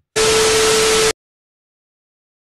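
A loud burst of static hiss with a steady hum-like tone inside it, lasting about a second and cutting off abruptly into silence: a static-noise transition effect.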